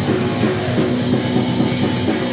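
Metalcore band playing live and loud: bass guitar, guitars and drums through the stage PA, heard from in the crowd.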